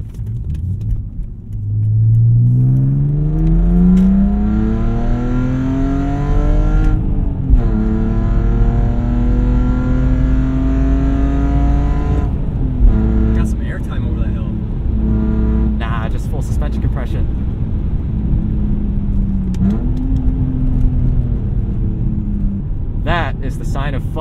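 BMW E46 330xi's straight-six with aftermarket headers and a muffler delete, loud and raw, pulling hard through the gears: the engine note climbs for about five seconds, drops suddenly at an upshift, climbs again and drops at a second shift, then holds at steady revs with a brief dip and recovery late on.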